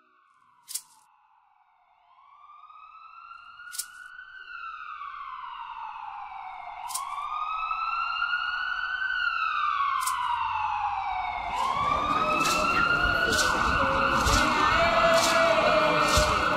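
A vehicle siren wailing, slowly rising and falling about once every three seconds and growing steadily louder as it approaches. From about twelve seconds in, busy outdoor noise joins it.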